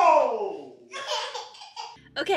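A baby laughing, opening with a loud squeal that falls in pitch, then quieter laughs.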